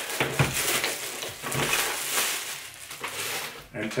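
Clear plastic bag crinkling and rustling as a small appliance is unwrapped and pulled out of it by hand, with a few light knocks of handling.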